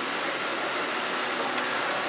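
Steady, even background hiss with no distinct events, the kind of air and room noise heard in an enclosed walkway.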